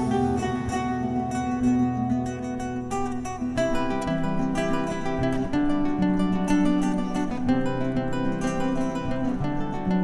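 Ortega Striped Suite C/E nylon-string classical guitar played fingerstyle, a plucked melody ringing over sustained, changing bass notes.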